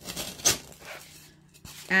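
A short rustle about half a second in as the paper cone and styrofoam ball are handled, with a few faint ticks after it; a woman starts speaking at the very end.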